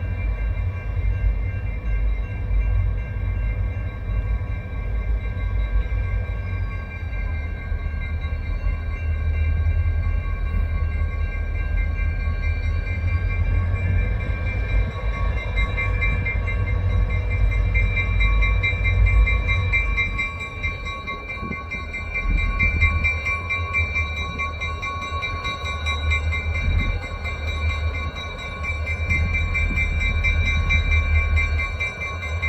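Railroad grade-crossing warning bells ringing steadily and rapidly, with a low rumble underneath.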